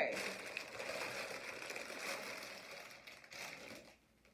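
Clear plastic packaging crinkling as it is handled, fading out near the end.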